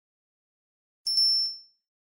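A short, high-pitched electronic ding about a second in, fading out within half a second: the notification-bell sound effect of an animated subscribe button.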